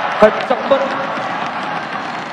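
Steady crowd noise from spectators in an indoor futsal arena, with a single sharp thump about a quarter second in, followed by a brief shouted voice.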